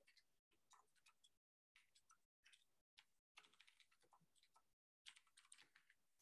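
Faint computer keyboard typing: quick, irregular key clicks that cut in and out, with short stretches of dead silence between them.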